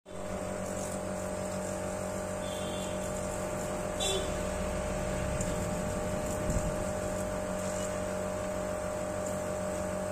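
Steady electrical hum of a phone nano-coating machine running while its hose is held to a smartphone, with a brief click about four seconds in.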